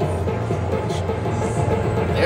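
Slot machine's bonus-win celebration music with a steady bass beat, played while the win is shown.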